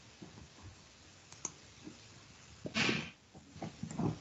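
A few faint clicks over low hiss, with one short, louder noise about three-quarters of the way through.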